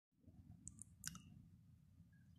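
Near silence: faint low room hum with a few small clicks, two light ticks and then a sharper click about a second in.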